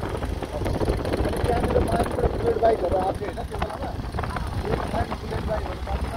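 Motorcycle engine running at riding speed, with wind rumbling on the microphone. A person's voice is heard over it for a moment in the middle.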